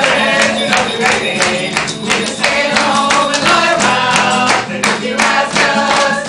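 A group of adults singing along together to an acoustic guitar, with hand clapping on the beat, about three claps a second.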